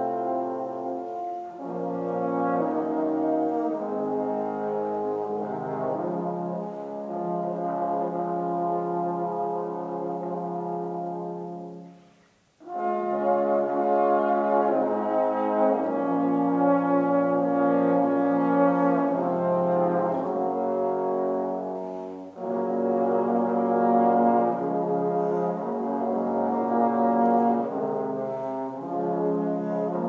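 Trombone quartet playing held chords in close harmony, the chords changing every few seconds. There is a brief break about twelve seconds in, then the chords resume.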